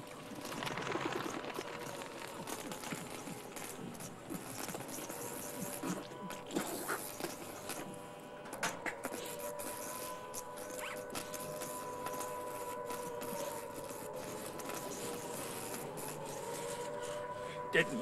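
A steady droning tone under indistinct, wordless voices, with scattered small clicks and rustles.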